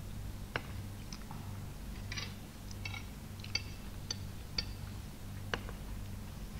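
Metal cutlery clinking and scraping against plates: a scattering of short, sharp clinks, some with a light ring, over a steady low electrical hum.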